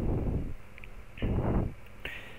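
Two breaths into a close headset microphone, soft puffs of air with no voice, one at the start and one just past halfway.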